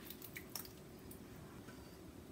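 Faint, soft squelching of thick sauce sliding and dropping from a saucepan into a slow cooker, with a few light clicks of a silicone spatula against the pan in the first half second.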